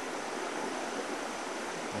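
A creek rushing steadily, an even roar of running water with no breaks.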